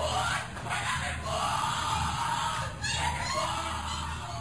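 Muffled, indistinct raised voices from a poor-quality covert recording of a ritual ceremony, heard under a steady low electrical hum and hiss.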